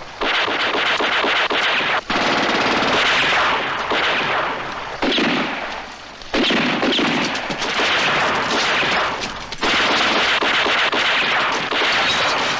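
Dense automatic gunfire in long overlapping bursts, with short breaks about two and six seconds in.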